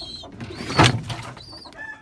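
Water poured from a plastic jug into a plastic drinker, with one short, loud rush of noise about a second in. A few short, high bird calls sound around it.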